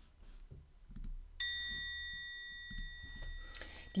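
A single high, bell-like chime struck once about a second and a half in, ringing with several clear tones at once and fading slowly over about two seconds.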